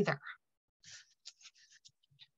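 Papers being handled on a desk: a string of faint, short, scratchy rustles starting about a second in, after the last word ends.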